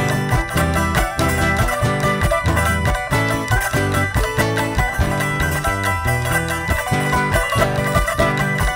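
Live Andean folk music in an instrumental passage between sung verses: charango and guitar plucked and strummed quickly over a steady, even beat.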